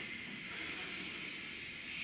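A long, steady hiss like a drawn-out "shhh", made by a performer's mouth as a vocal sound effect during a mimed improv bit. It holds level for about three seconds and cuts off sharply at the end.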